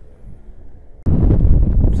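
Wind buffeting the microphone: quiet at first, then loud, dense low noise that starts abruptly about a second in.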